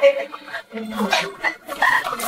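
A person's voice making a few short sounds without clear words, with brief gaps between them.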